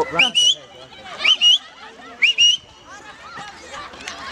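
A person whistling loudly three times, about a second apart, to get the attention of distant children. Each whistle is short, sweeps up in pitch and then holds.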